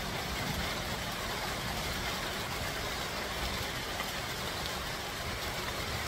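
Steady rain falling, an even hiss that holds level throughout.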